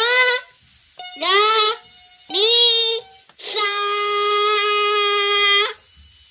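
A child singing wordless notes into a toy electronic keyboard's microphone: three short notes that each swoop up in pitch, then one long held note of about two seconds.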